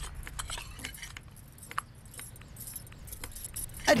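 Light, irregular clinks and taps of kitchen work, utensils against dishes and a board, with one sharper tick a little under two seconds in, over a low steady hum.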